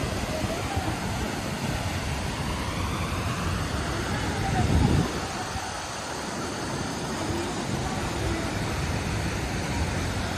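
Steady rushing of a waterfall and the water running through the pool below it, with a brief louder low-pitched swell about five seconds in.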